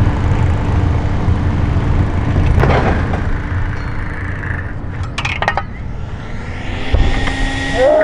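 Scooter run on a mega ramp: a loud, steady low rumble of wheels and wind on the microphone, with a few short clicks in the middle and a thump about seven seconds in as the scooter lands.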